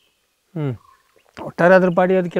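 A man's conversational speech, in a short pause: about half a second of dead silence, one brief vocal sound falling in pitch, then talk resuming about a second and a half in.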